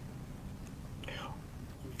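A pause in a man's speech at a desk microphone: a steady low room hum, with a faint breath about a second in.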